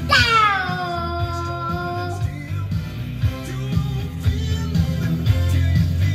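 A toddler singing one long note into a microphone that slides down from high and is held for about two seconds, over rock-and-roll backing music with bass and guitar.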